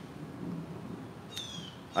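A single short bird chirp, falling in pitch, about one and a half seconds in, over faint outdoor background.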